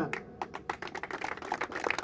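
A small crowd clapping: irregular hand claps that come thick and fast.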